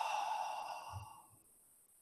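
A man's deep, audible breath out through an open mouth, a long sigh-like exhale that fades away over about the first second.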